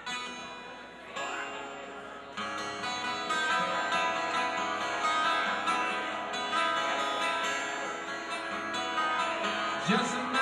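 A live rock band starts a song with strummed chords on a twelve-string acoustic guitar. About two and a half seconds in, more instruments join and the sound gets fuller and louder.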